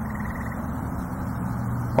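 Steady low background rumble of outdoor ambience, with a faint, rapid, high ticking that fades out about half a second in.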